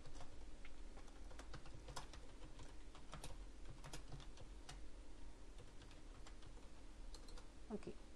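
Computer keyboard typing: irregular key clicks over a low steady hum.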